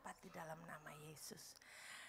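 Very faint, soft, near-whispered speech of a woman praying into a handheld microphone.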